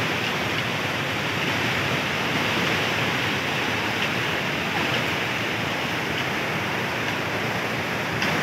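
Mountain river rushing steadily, a constant even wash of water noise.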